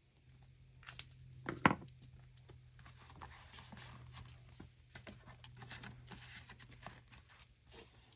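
Paper and plastic binder sleeves being handled and a ballpoint pen writing on paper: a continuous, quiet scratchy rustle. Two sharp clicks come in the first two seconds, the second louder, and a faint steady low hum runs underneath.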